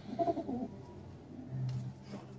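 Domestic pigeons cooing: a short warbling coo in the first half-second, then a lower, steadier coo near the end.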